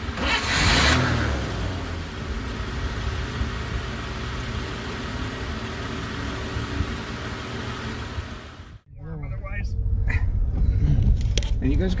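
1939 Graham Sharknose's straight-six engine revving briefly about half a second in, then running steadily. After a short break near nine seconds it is heard again from inside the cabin under voices.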